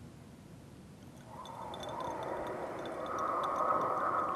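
The soundtrack of a video playing through a laptop's small speakers: a hazy swell that rises from about a second in and is loudest near the end.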